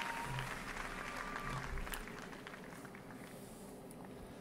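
Faint applause and crowd noise from a live concert recording, slowly dying away, with a thin high tone heard twice early on.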